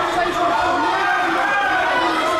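Crowd of spectators talking and calling out, many voices overlapping into a steady din.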